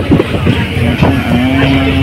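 Passenger train running, heard from inside the coach by an open door or window: a loud steady rumble with rapid clatter of the wheels on the rails and rushing air. A steady low hum joins in about a second in.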